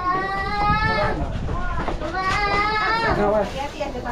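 A person's voice giving two long, drawn-out calls with a wavering pitch, each about a second long, with other voices around.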